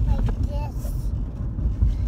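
Steady low rumble of a car on the move, heard inside the cabin, with a child's short high-pitched vocal sounds in the first second.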